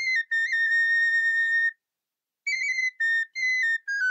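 Background music: a solo high wind-instrument melody. One long held note, a short break about two seconds in, then a run of shorter notes stepping down in pitch.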